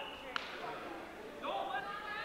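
Voices of spectators and officials around a wrestling mat in a gym, with one sharp snap about a third of a second in; the voices pick up again near the end.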